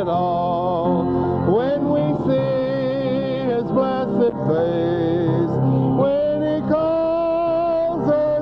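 A gospel hymn sung slowly with instrumental accompaniment, long held notes with vibrato that glide from one pitch to the next.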